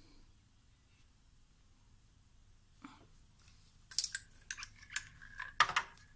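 Quiet at first, then from about three seconds in a scatter of small sharp metallic clicks and taps: an air hose's chuck being handled and pushed onto a tire valve stem.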